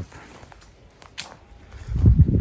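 Faint footsteps on the leaf-littered ground of a yard, with one sharp click about a second in.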